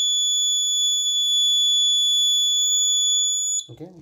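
Piezo buzzer on an Arduino accident-detection board sounding its alarm as one continuous high-pitched tone. It signals a detected accident and cuts off suddenly near the end as the board returns to normal.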